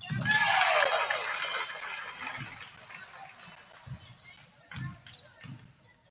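Gym crowd cheering and shouting, fading over the first two seconds, then a basketball bouncing on the hardwood floor a few times, with a brief high sneaker squeak about four seconds in.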